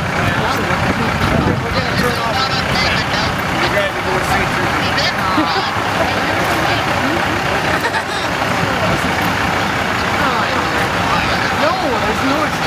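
Semi truck's diesel engine running steadily as it slowly pulls a cabin on a heavy-haul trailer.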